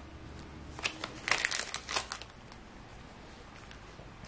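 Trading cards being handled: a run of soft rustles and light flicks of card stock, about one to two seconds in.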